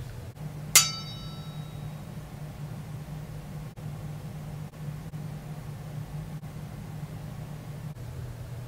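A single short clink of a small hard object about a second in, with a bright ringing tone that fades within about a second, over a steady low hum.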